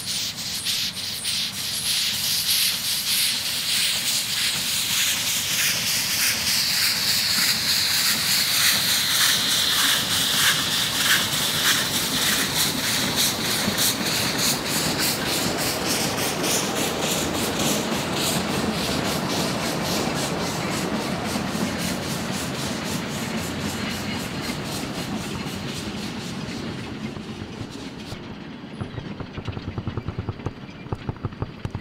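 Narrow-gauge forest railway train behind the steam locomotive Amamiya No. 21, rolling along the track with a dense, rapid clatter of wheels on rail. It grows louder to a peak about ten seconds in, then slowly fades, with a few separate clacks near the end.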